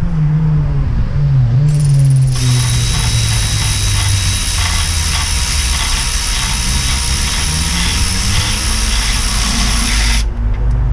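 A hand ratchet clicking rapidly and continuously as a bolt is spun, starting about two seconds in and stopping abruptly at the end.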